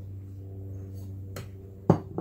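A container set down on a table: a light tap, then a sharp knock near the end, over a steady low hum.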